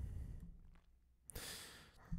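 A faint breath at the microphone, a short airy sigh about one and a half seconds in, just after a small click, in an otherwise near-silent pause.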